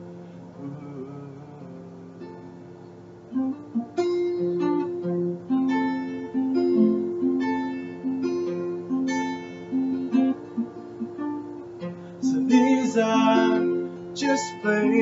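Acoustic guitar played solo through a webcam microphone. A chord rings out softly for about three seconds. Then a melody of single picked notes follows, growing louder and fuller near the end.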